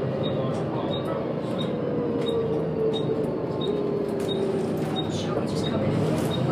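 Volvo B7TL double-decker bus heard from inside the lower deck: the diesel engine and driveline running steadily, with a whine that falls in pitch midway as the bus slows. Over it, the turn indicator ticks evenly, about three ticks every two seconds.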